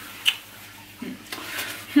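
A pause in speech: a single short click about a quarter of a second in, then soft voice sounds from a woman toward the end.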